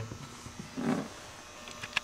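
Faint hand-handling noises from working a small metal crimp terminal and wire. There is a soft low rustle about a second in and a few small clicks near the end, over a steady faint hum.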